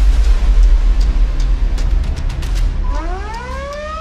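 Trailer score sound design: a deep bass rumble is held under sparse faint ticks. About three seconds in, a siren-like wail starts rising in pitch.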